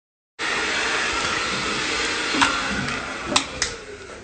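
Corded vacuum cleaner motor running steadily, with a few sharp clicks, then winding down over the last second as its plug comes out.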